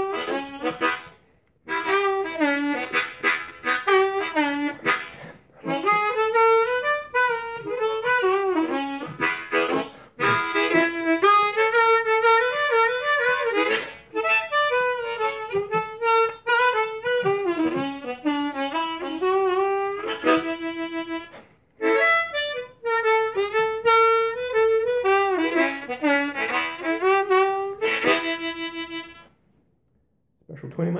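Ten-hole diatonic harmonicas, a Kongsheng Amazing 20 Deluxe and a Hohner Special 20, played in turn for a side-by-side comparison: bluesy phrases with bent notes, broken by short pauses.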